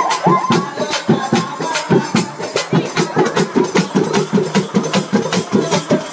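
Live folk drumming on a hand-held frame drum and a barrel drum, struck in a fast, steady beat of about three to four strokes a second to accompany a dance.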